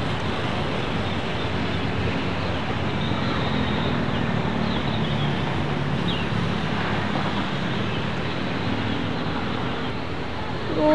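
Steady street ambience: a constant rumble of distant traffic with wind noise on the microphone.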